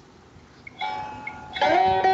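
Veena being plucked in Carnatic style, starting softly about a second in after a short quiet gap and getting louder towards the end, with a note bending up in pitch.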